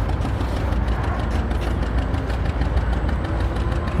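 A steady low rumble with a faint hum, like a motor running, unchanging throughout.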